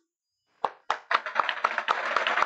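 Applause from a small group: silence, then scattered sharp hand claps from about half a second in that quickly thicken into steady clapping.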